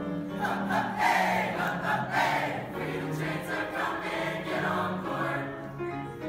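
Mixed high school choir singing in parts, holding chords in both low and high voices, with the notes changing about once a second.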